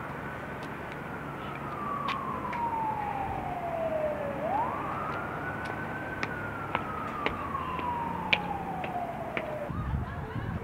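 An emergency-vehicle siren wailing. Its pitch falls slowly over about four seconds, climbs again quickly about four and a half seconds in, then falls slowly once more. Under it runs steady street noise, with a few sharp clicks.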